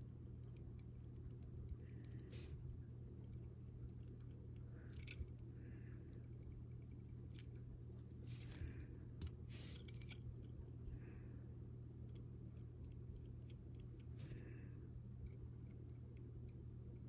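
Faint, scattered light clicks and soft scrapes of a metal-tipped edge-paint tool being dipped in a small paint pot and drawn along the raw edge of a snap tab, over a steady low hum.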